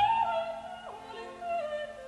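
Operatic soprano singing a high held note with orchestra, the voice sliding down about a second in.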